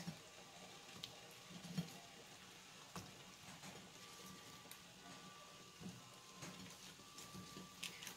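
Faint sound of a pot of water boiling, with a few soft plops and knocks as quartered onion pieces are dropped in.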